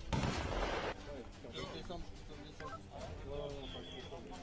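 Gunfire from Kalashnikov-pattern assault rifles: a loud burst lasting under a second at the start, followed by a voice speaking.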